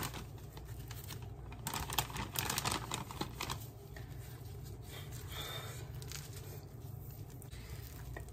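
Soft crinkling and rustling of plastic wrap and a foam meat tray as gloved hands handle raw chicken breasts, with scattered light clicks over a steady low hum.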